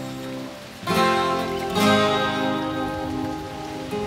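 Instrumental passage of progressive rock between sung lines: guitar chords ringing over sustained instruments, with fresh chords struck about one and two seconds in.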